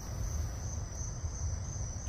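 Steady, high-pitched chirring of crickets, over a low rumble.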